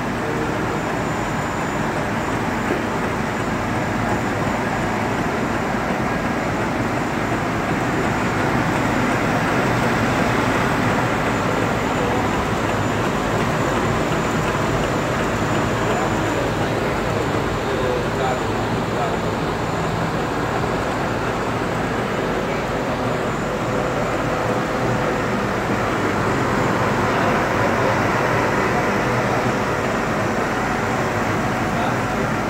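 MKS Sanjo P 25 SF label printing press running, a steady mechanical noise from its print units that keeps an even pace throughout.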